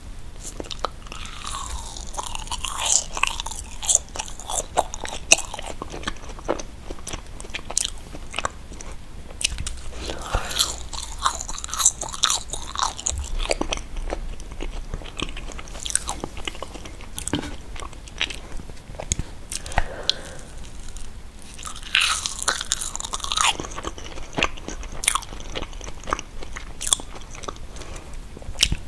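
Close-miked biting and chewing of soft, foamy vegan marshmallows: many quick, wet, sticky clicks and lip smacks that come in clusters.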